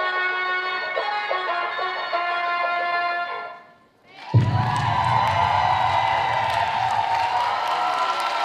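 Dance-routine music with a melodic instrument line fades out about three and a half seconds in. After a brief gap, loud audience cheering and screaming breaks out and carries on.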